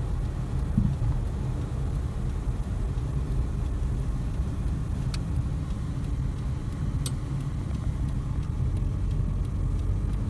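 Steady low rumble of a Toyota car's engine and tyres heard from inside the cabin while driving, with two brief light clicks about five and seven seconds in.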